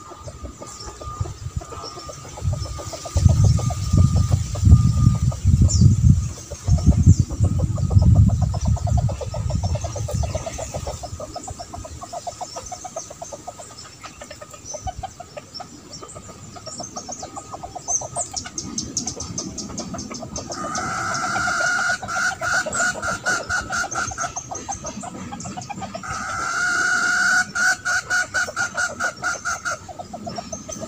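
A rooster crows twice in the second half, each call drawn out for a few seconds. Earlier there are bouts of loud, low rumbling noise.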